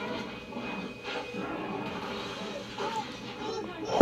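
A film soundtrack playing from a television and picked up through the room: a low mix of score and sound effects with faint voices.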